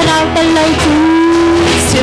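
Live worship music: women's voices singing into microphones over electric bass and guitar, with one note held steadily for about a second in the middle.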